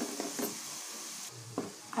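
A spoon stirring and scraping a thick masala paste around a hot metal pan, with a light sizzle of oil and a few sharp scrapes of the spoon on the pan.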